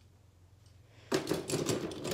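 Small die-cast toy monster trucks clicking and rattling as they are handled, starting about a second in.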